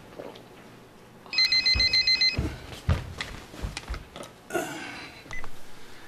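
A home telephone ringing: one burst of rapid electronic trilling about a second long, starting about a second and a half in. It is followed by several short knocks and clicks.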